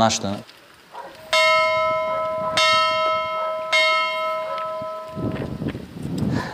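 A single church bell hung on a post, struck by hand three times about a second and a quarter apart, each stroke ringing on into the next before the ringing fades out about five seconds in.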